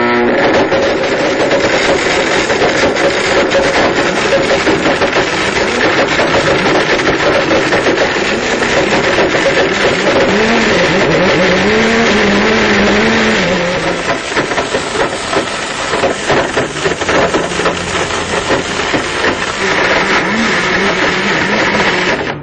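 A blender motor running at full power with three rubber hockey pucks grinding and clattering in the jar: a loud, continuous noise with rapid knocks. About halfway through, the motor's pitch wavers, and after that the sound becomes a little quieter and more uneven.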